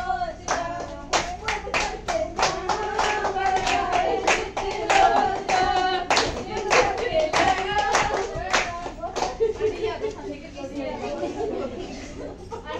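A group of women clapping hands in an even beat while a woman's voice sings a Punjabi folk song, gidha style. The clapping stops about nine seconds in and gives way to chatter.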